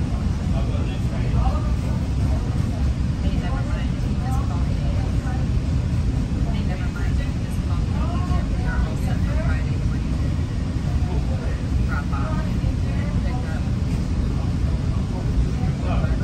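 Steady low rumble of a Rail Runner commuter train moving along the track, heard from inside the passenger coach. Indistinct voices of people talking sound faintly over it.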